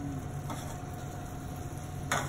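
Steady low hum and hiss of commercial kitchen equipment running, with a faint steady whine and one faint click about a quarter of the way in.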